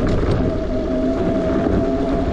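Bafang BBSHD mid-drive e-bike motor whining at a steady pitch while riding, over a dense low rumble of wind buffeting the microphone.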